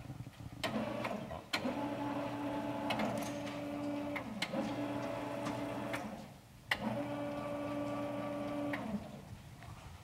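Sliding chalkboard panels moving along their tracks: a steady low drone that starts with a sharp knock. It runs in two long stretches with a short break about six seconds in.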